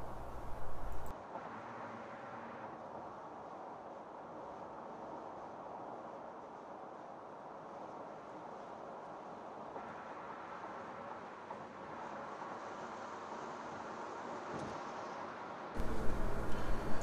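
Faint, steady road and tyre noise of a car driving on a highway, heard from inside the cabin.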